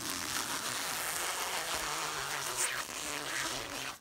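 Clear plastic stretch film being pulled off its roll in one long continuous pull, a steady noise that stops suddenly at the end.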